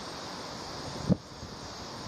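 Wind buffeting the microphone: a steady rushing background with one short, sharp low thump about a second in.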